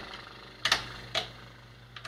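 Two sharp clicks from a computer keyboard about half a second apart, the first the louder, over a low steady hum.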